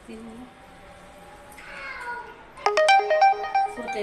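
An electronic ringtone melody of clean beeping notes stepping between a few pitches, starting suddenly about two and a half seconds in and the loudest sound here, after a brief voice.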